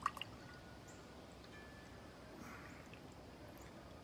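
Faint pouring and dripping of a thick barrel-aged imperial stout from a glass bottle into a pint glass, with a couple of small clicks near the start.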